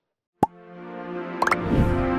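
Television news outro sting: a sharp click, then a sustained synth chord that swells, with a whoosh and a low hit about one and a half seconds in.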